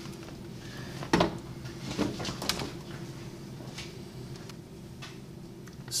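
Handling clatter of plastic dust-collection fittings and a handheld anemometer: a sharp knock about a second in, then lighter knocks, over a faint steady hum.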